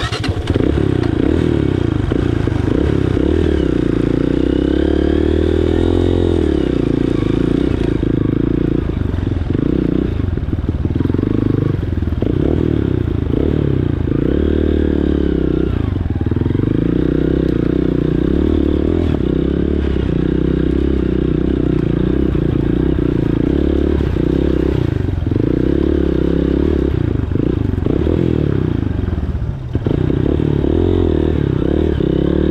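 Dirt bike engine running close by at low trail speed, its revs rising and falling as the throttle is opened and eased off several times.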